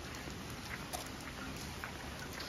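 Steady rain falling on a gravel path, an even hiss with many small drop ticks, and one sharper tick about a second in.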